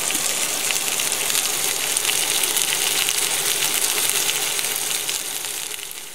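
Spruce grouse pieces frying in a cast-iron skillet: a steady, crackling sizzle that eases off near the end.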